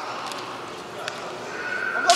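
Kendo fencers' kiai shouts and the hall's echo, with a few light clicks of bamboo shinai in the middle. A new shout starts to build near the end.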